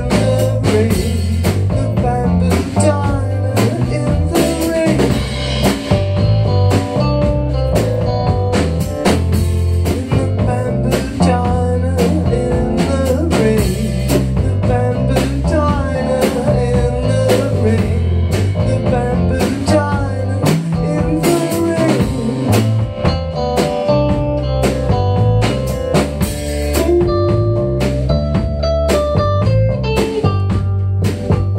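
Three-piece rock band playing live: electric guitar over bass guitar and drum kit, with a steady drum beat throughout.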